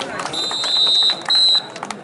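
Referee's whistle blown twice, a long steady blast and then a short one, signalling the end of a kabaddi raid in which the raider has been tackled.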